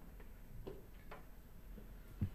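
A few faint clicks, about half a second apart, over quiet room tone.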